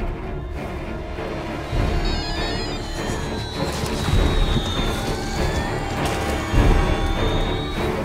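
Film soundtrack: tense music with deep booms swelling up every couple of seconds and thin high tones that slide up and down.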